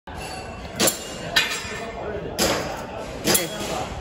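Four sharp knocks at uneven intervals, ringing briefly in a large echoing hall, with people talking.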